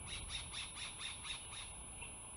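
Bald eagle calling: a quick run of about seven high, sharp chittering notes, about four a second, that stops shortly before the end.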